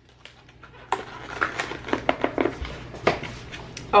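Scattered light clicks and knocks of kitchen items being handled at a countertop, starting about a second in, over a faint steady low hum.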